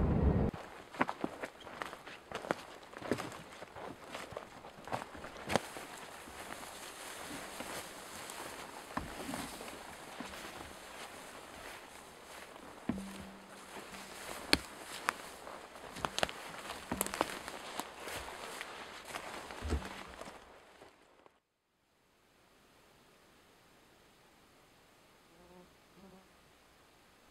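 A person walking through dry grass and undergrowth: irregular footsteps and rustling, with sharp snaps now and then. The steps stop about twenty seconds in, leaving near silence.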